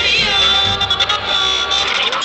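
Duranguense band music: a melody line over a steady low bass.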